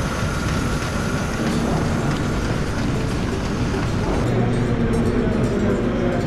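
Apple sorting line running: a steady, dense clatter and rumble of conveyors, with apples rolling and knocking along the belts. About four seconds in it turns duller, with a low steady hum.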